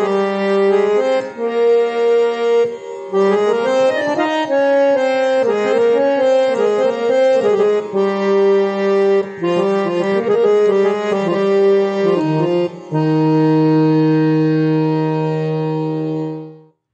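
Harmonium playing a phrase of held notes that change every second or so. It ends on a long sustained chord that cuts off near the end.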